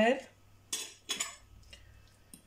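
A metal fork scraping and clinking against a glass bowl while scooping up filling, in two short strokes: one a little under a second in and one just after.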